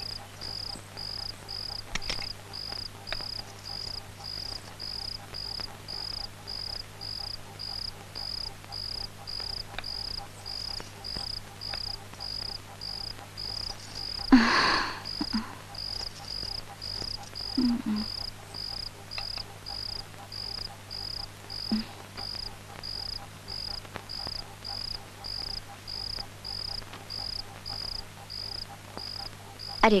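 Crickets chirping in an even, unbroken rhythm of about two to three chirps a second, over a low steady hum. A brief louder noise comes about halfway through, and a couple of softer short ones follow later.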